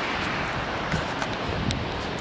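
Steady rushing roar of the Mesa Falls waterfall heard from the approach trail, even and unbroken, with a few faint ticks over it.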